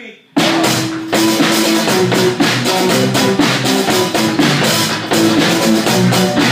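A small rock band of drum kit and electric guitars starts playing together suddenly, under half a second in, and carries on loud with a steady beat.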